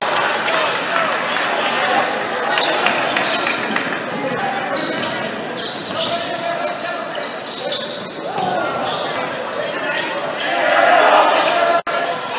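Basketball gym during play: a basketball dribbled on the hardwood court under the steady chatter and shouts of the crowd in a large echoing hall. The crowd's shouting swells near the end.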